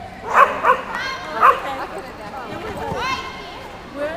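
A dog barking: three sharp barks in the first second and a half, with further higher yips after.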